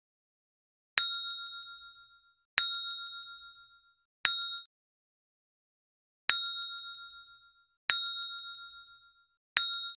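Notification-bell 'ding' sound effect of an end-card subscribe animation, struck six times in two sets of three. Each ding is a bright metallic ring that fades over about a second, and the third of each set is cut short.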